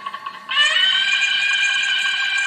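Music with a wind instrument: a few short wavering notes, then about half a second in a loud, steady held note that sustains.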